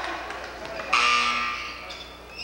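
A referee's whistle blown once, a shrill blast of about a second that starts sharply and fades out.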